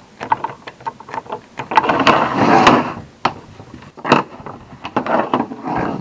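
Small hand scraper scratching green corrosion off the metal rivets of a canvas web belt: a run of sharp scratchy clicks, with a longer rasping scrape about two seconds in.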